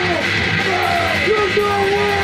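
Grindcore band playing in a rough rehearsal recording: distorted guitar and bass with drums, loud and dense, under yelled vocals held in long bending notes.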